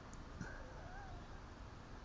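Quiet room tone with a faint click about half a second in and a faint, brief wavering whistle-like tone just after it.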